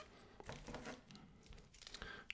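Faint rustling and crinkling of plastic wrapping as a coiled cable is handled, with a few small clicks.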